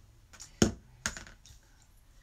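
Small hand pliers and a spool of wire handled on a tabletop: a sharp click a little over half a second in, another about a second in, and a few faint taps.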